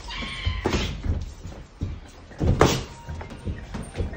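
Boxing sparring in a ring: a few sharp thuds of gloves and feet on the ring canvas, the loudest about two and a half seconds in, with a brief squeak near the start.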